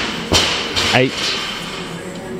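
Loaded barbell bench press rep: two short, sharp bursts of noise about a third of a second apart, followed by a counted rep.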